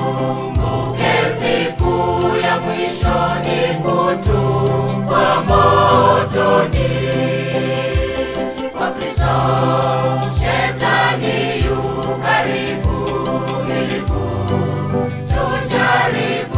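Mixed choir of men's and women's voices singing a gospel hymn in Swahili in harmony, over a backing bass line with a steady beat.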